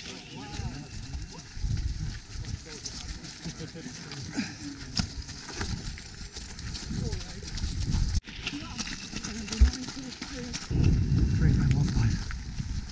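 Runners' footsteps thudding and crunching in a steady rhythm over a shingle and seaweed beach, with indistinct voices of other runners behind. A louder low rumble comes near the end.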